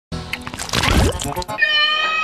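A loud, dense jumble of sounds, then about one and a half seconds in a cartoon puppy character's high-pitched voice starts a long, drawn-out wailing "Nooo!".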